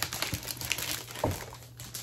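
Rustling and crinkling of paper and cardboard being handled, with a few light knocks, as decorative nesting boxes are moved about.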